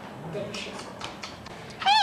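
Speech: a voice calls 'Hey!', then near the end a high, squeaky, cat-like voice starts, rising and falling in pitch, as a child voices a clay cat.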